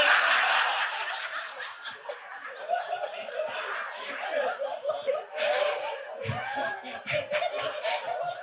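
A congregation laughing together at a joke, loudest at the start and slowly dying down.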